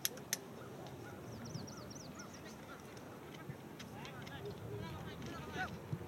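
Open-air ambience at a soccer field: distant shouts and calls from the game, a run of short high bird chirps, and two sharp knocks just after the start.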